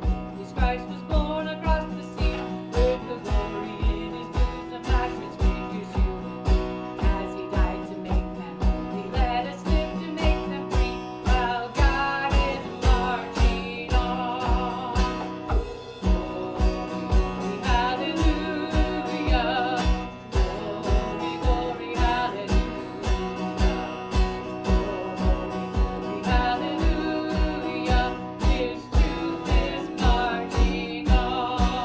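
Live band playing a country-gospel song: strummed acoustic guitar and a steady beat about two to the second, with a voice singing the melody over it.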